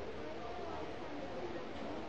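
Faint, indistinct voices talking over the steady background noise of a Boeing 757 cockpit.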